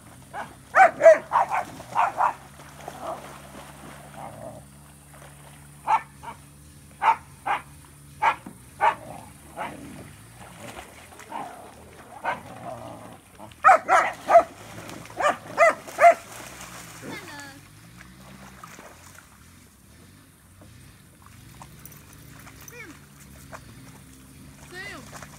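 A dog barking in three bouts of quick, sharp barks, about six to eight barks in each, with pauses of several seconds between them.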